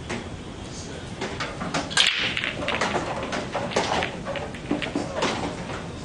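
Pool balls knocking and clicking together as they are gathered from the table's pockets and ball return and racked after a frame. An irregular run of sharp clacks starts about two seconds in, the first one the loudest.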